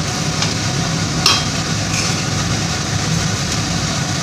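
Metal spatula stirring and turning cooked rice in a large metal pan, scraping through the rice with a few clicks against the pan, the loudest about a second in, over a steady low hum.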